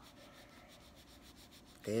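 Faint scratchy rubbing of a gel pen worked back and forth on paper, blending blue over yellow, with a voice starting near the end.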